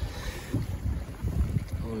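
Low rumble of wind on the microphone with light water sloshing and a few small knocks, as a large fish is held in the water on lip grips.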